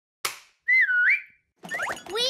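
Cartoon sound effects: a sharp hit that fades quickly, then a whistle of under a second that dips in pitch and rises back up. Near the end, rising gliding tones lead into music.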